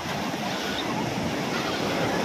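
Small ocean waves breaking and washing up a sandy beach, a steady rush of surf.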